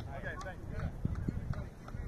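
Voices of people across a youth soccer field, calling out briefly near the start, followed by a string of light, irregular knocks.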